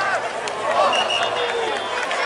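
Sideline crowd chatter: many voices talking and calling out at once, with no single voice standing out.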